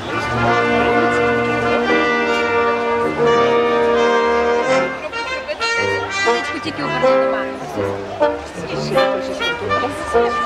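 Music led by brass instruments, with held notes over a repeating bass line.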